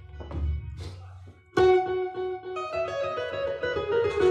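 Electric bass guitars playing: soft low notes at first, then loud notes struck about one and a half seconds in that ring on, moving to new pitches about a second later.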